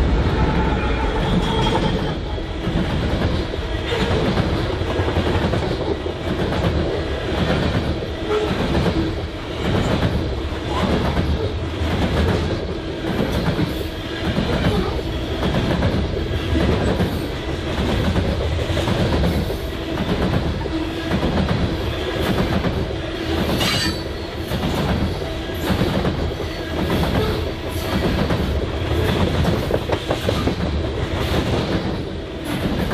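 Freight train of covered hopper cars rolling past close by, its wheels clacking in a steady rhythm over a continuous rumble, with diesel locomotive engine sound heaviest in the first couple of seconds. A brief wheel squeal cuts in about three-quarters of the way through.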